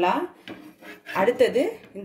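Flat metal spatula scraping and clattering against an iron dosa tawa as it is worked under a dosa and flips it over.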